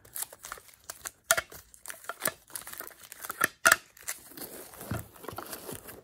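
Hard plastic graded-card slabs clicking and rubbing against each other as a stack is handled and set back into a foam-lined case. The clicks are irregular, with a couple of sharper clacks about a second in and again near the four-second mark.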